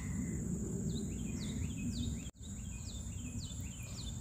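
Summer garden ambience: a steady high-pitched insect drone with a bird repeating short descending notes, over a low background rumble. The sound cuts out for an instant a little past halfway.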